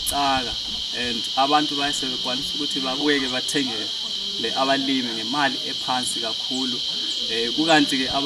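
Insects chirring in a steady, unbroken high-pitched drone, with a man talking over it.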